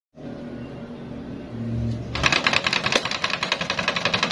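An electric stand fan spinning a makeshift object on its hub in place of a blade. There is a low motor hum, then from about two seconds in a loud, rapid, even clattering of about a dozen clicks a second.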